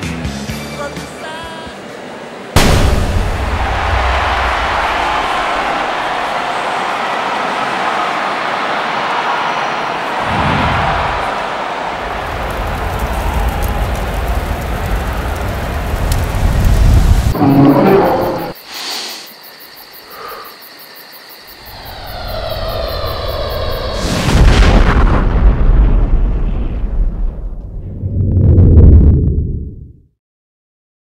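A sudden loud boom about two and a half seconds in, then a long rumbling roar like an explosion and fire. A quieter stretch follows, and a second loud rumbling surge comes near the end and cuts off.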